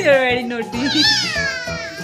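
Background music with two long, high-pitched vocal calls over it, each falling in pitch: the first in the first half-second or so, the second rising briefly then sliding down through the rest.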